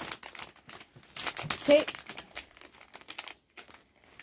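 Crinkling of an MRE's flameless ration heater bag, with the entrée pouch inside, as it is gripped, pulled up and shifted in the hands; the rustle dies away shortly before the end.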